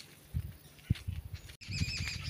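Footsteps and camera-handling thumps while walking on a dirt path, then, after a sudden cut, a short high-pitched call.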